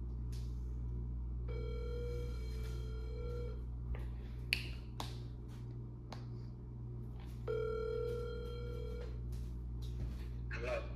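Outgoing phone call ringing out through the phone's speaker: the ringback tone sounds twice, each ring about two seconds long with about four seconds of silence between. A few light taps fall between the rings.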